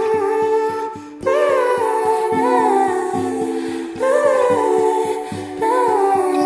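Recorded song: a woman's wordless sung vocal in long gliding phrases over a steady pattern of low plucked notes, with a new vocal phrase entering about a second in and again around four and five and a half seconds in.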